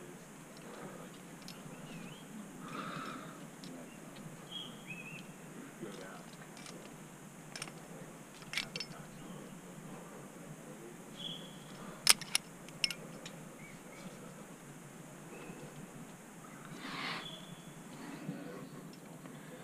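A sport climber moving up rock: a handful of sharp clicks, the loudest a pair about twelve seconds in, from the climber's gear and hands on the rock, over a steady hiss. A few short, high chirps sound now and then.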